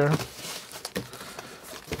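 Cardboard parcel wrapped in packing tape being pulled open by hand: a soft rustling and scraping of tape and cardboard flaps, with a few small clicks about a second in.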